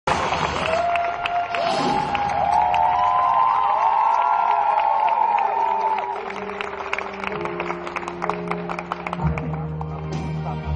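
Live studio audience cheering and clapping, with high rising-and-falling cries over the noise. From about six seconds in the applause thins and the slow instrumental intro of a song takes over with long held notes.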